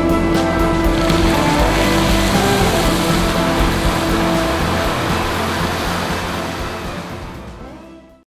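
Background music over the steady rush of the Jet d'Eau fountain's water column, which comes in about a second in. Both fade out near the end.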